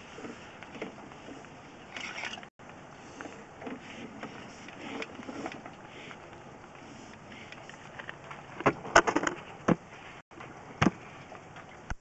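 Sewer inspection camera's push cable being reeled back by hand: a steady rustling noise with scattered clicks and knocks, and a cluster of sharper knocks about nine seconds in and one more near eleven seconds.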